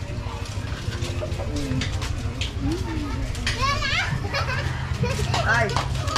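Children shouting and calling out as they play, their high voices rising about halfway through and again near the end, over faint distant chatter and a steady low rumble.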